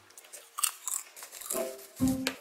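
Popcorn being chewed: a run of crisp, irregular crunches.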